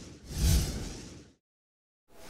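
A whoosh sound effect for a sliding title-card transition: a swelling rush with a low boom under it that peaks about half a second in and fades away. It then cuts to dead silence for the last half second or so.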